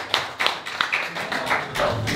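Scattered hand clapping from a small audience, about four sharp, uneven claps a second.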